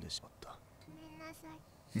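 Quiet, soft-spoken dialogue close to a whisper.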